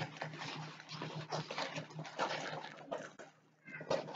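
Plastic wrapping and a rolled diamond painting canvas rustling and crinkling in irregular bursts as they are unpacked by hand, with a brief squeak near the end.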